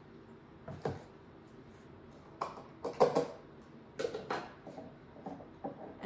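Kitchenware handled on a counter: scattered short knocks and clinks, loudest about halfway, as a plastic measuring jug and funnel are set down and a glass bottle of liqueur is closed.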